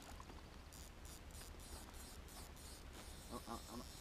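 Faint outdoor background with faint, fairly regular ticking, about four ticks a second, and a brief man's voice near the end.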